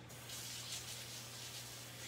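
Water running from a kitchen tap into the sink, a steady hiss, as hands are washed.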